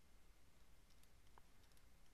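Near silence: faint room hiss with a few soft clicks.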